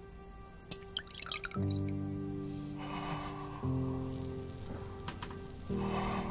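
Water dripping and splashing in a few quick drops, then again more softly, under slow sustained music chords that change about every two seconds.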